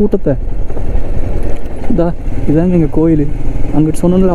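Motorcycle engine running at riding speed under a steady low wind rumble on the microphone. About two seconds in, a voice hums a wavering tune over it without words.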